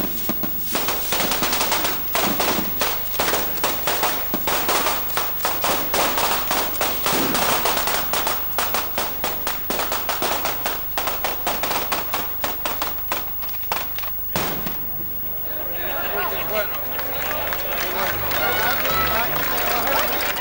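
A long string of festival firecrackers going off, sharp bangs several per second in quick succession, stopping suddenly about fourteen seconds in. A crowd's voices follow.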